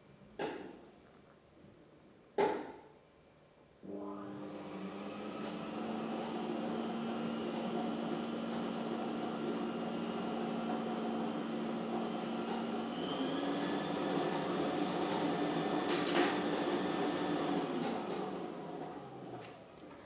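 Two sharp clicks, then a lottery drawing machine starts up about four seconds in, its motor humming steadily while the numbered balls tumble and rattle inside the clear plastic drum. The pitch steps up slightly partway through, and near the end the machine runs down with a falling hum as a ball is drawn.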